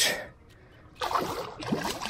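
A hooked redfish (red drum) thrashing and splashing at the water's surface. The splashing starts about halfway through, after a short lull.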